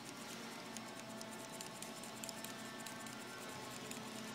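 Faint, irregular light clicking and rattling of a hand-worked metal cut-out toy, its riveted jointed parts knocking as they swing, over a low steady hum.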